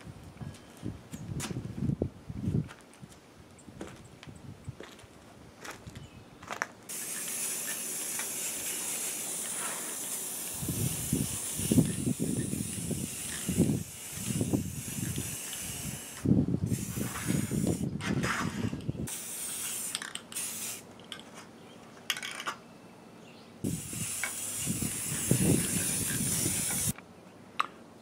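Aerosol spray-paint can hissing in long bursts of a few seconds each with short breaks, spraying black paint onto aluminum tent poles. Low knocks and rustles of handling come in the first few seconds and between the sprays.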